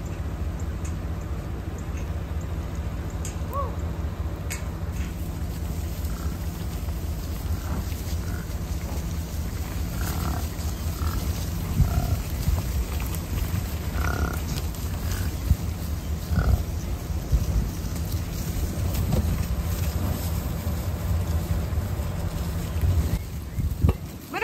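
American bison grunting now and then as the herd moves past, most of the grunts in the middle of the stretch, over the steady low hum of an idling truck engine.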